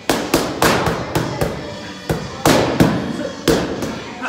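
Boxing gloves striking focus mitts: about ten sharp smacks, a quick run of six, then three more, then a single one near the end.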